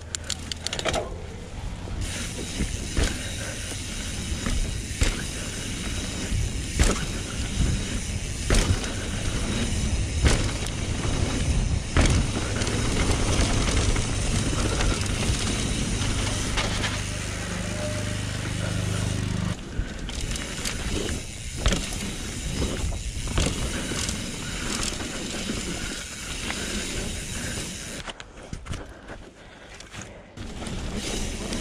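Trek Remedy full-suspension mountain bike ridden fast down a dirt trail, heard from a helmet chin-mounted camera: constant wind rush and tyre noise, with frequent sharp knocks and rattles from the bike over bumps and roots. The noise dies down near the end as the bike comes to a stop.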